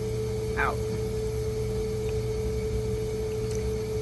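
Dialysis machine running while it primes its lines: a steady low hum with a steady mid-pitched tone over it.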